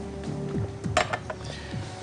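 A drinking glass clinks against a glass tabletop about a second in, with a few lighter taps after it, over soft background music.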